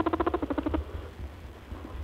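Rabbit sound: a fast, even buzzing pulse train, about twenty pulses a second, that fades out about a second in and comes back faintly near the end.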